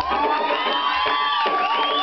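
A live band playing, with a high sustained note that bends up and down in pitch over the steady accompaniment.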